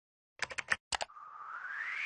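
Logo-animation sound effects: a quick run of sharp clicks about half a second in and two more near one second, then a whoosh that rises steadily in pitch.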